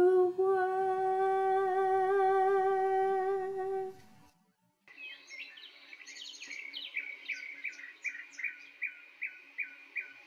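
A woman's singing voice holds the last note of a song for about four seconds, then fades out. After a short silence, a bird starts chirping in quick repeated notes.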